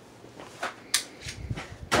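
A few short, sharp clicks and knocks, with two louder ones about a second in and near the end.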